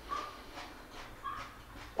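Faint chewing of a raw cucumber slice, with a few short, high, whimper-like hums from the eater's closed mouth.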